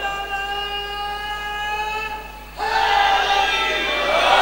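A man's voice holding one long, steady sung note through a microphone; about two and a half seconds in it stops and an audience breaks into loud shouts and cheers.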